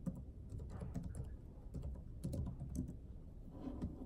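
Fingers tapping the keys of a small keyboard: irregular key clicks with short pauses between them.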